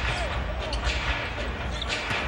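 Arena crowd noise during live basketball play, with a basketball being dribbled on the hardwood court.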